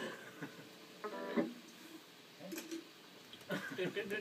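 Electric guitar played quietly: a few picked notes, with one note ringing for about half a second a second in, under faint talk.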